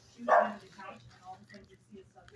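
A dog barks once, loudly and briefly, about a third of a second in; fainter sounds follow.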